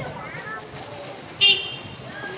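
A single short, high-pitched toot, like a horn, about one and a half seconds in, over low background murmur.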